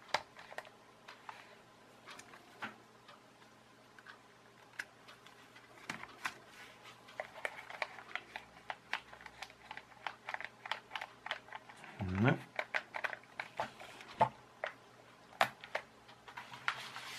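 Irregular light plastic clicks and taps as the switch and control sticks of an Air Hogs infrared toy transmitter are worked by hand, over a faint steady hum.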